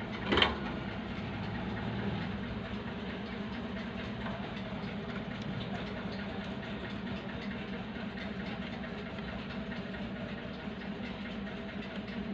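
A steady low mechanical hum in the background, with one brief knock about half a second in.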